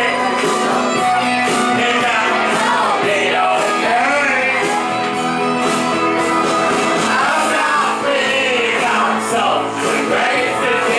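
A rock karaoke backing track playing loud, with a live voice singing over it and some shouted singing.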